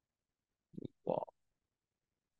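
A man's brief, low vocal murmur: two short sounds close together about a second in, not clear speech.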